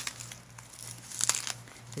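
A thick, collaged paper journal page being turned by hand, the stiff layered paper crinkling. A louder, sharp crackle comes a little after a second in.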